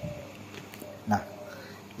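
A pause in a man's speech: low, steady background hiss, broken about a second in by one short spoken word, "nah".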